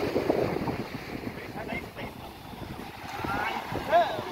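Wind buffeting the microphone over the wash of surf breaking on the beach, with brief voices and a short exclamation near the end.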